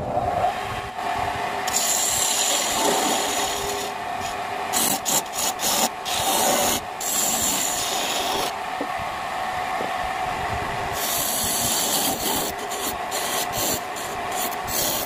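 Wood lathe motor coming up to speed with a steady hum, while a hand-held turning chisel cuts the spinning mahogany blank with a rough hissing scrape. The scrape comes in long stretches broken by short gaps.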